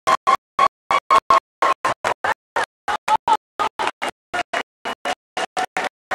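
Live band music chopped into short fragments, about four a second, with dead silence between each one. This is typical of a recording stuttering or breaking up.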